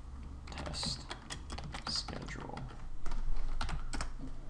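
Typing on a computer keyboard: a quick run of keystrokes as a short name is typed, louder near the end.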